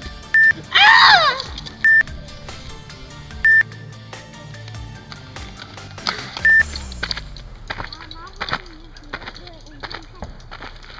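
Four short, flat electronic bleeps, all at the same pitch, scattered irregularly through the first seven seconds, with a brief shouted voice falling in pitch between the first two.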